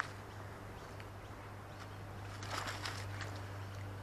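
Quiet outdoor ambience with a steady low hum, and a short patch of faint scuffing about two and a half seconds in.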